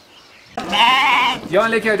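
Sheep bleating loudly, several bleats one after another starting about half a second in, as the flock is let out of a shed, with a man calling "aaja" (come on) to them near the end.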